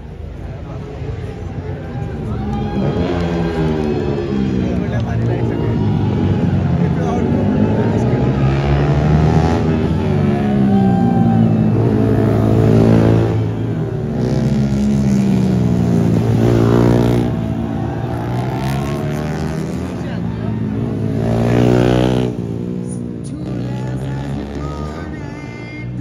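Racing motorcycles' engines revving up and down through the gears as several bikes lap past, the pitch rising and falling again and again. The loudest passes come about halfway through, a few seconds later, and near the end.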